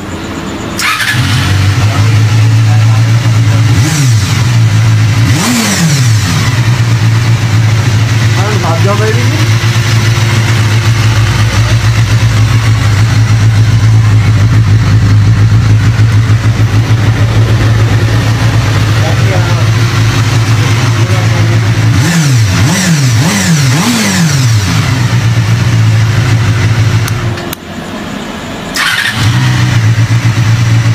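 Honda CD 125 motorcycle engine with an aftermarket silencer, starting about a second in and then running steadily. It is revved with throttle blips a few seconds in and several quick blips later on, and drops off briefly near the end before picking up again.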